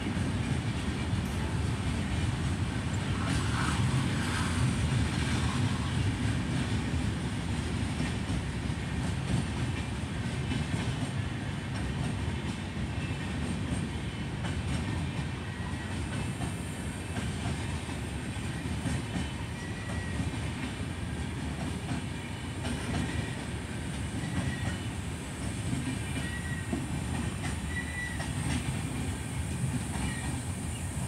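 Freight train of BOST open wagons rolling past close by: a steady rumble with the wheels clattering over the rail joints. A few short high squeals come in the last third.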